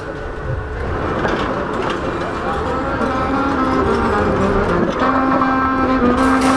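Saxophone playing a slow melody of held notes, coming in about halfway through and growing louder, over the low rumble of city street noise.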